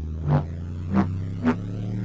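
Sound-effect drone: a steady low hum with four short pulsing tones, each pitched higher and coming sooner than the last, building in tension.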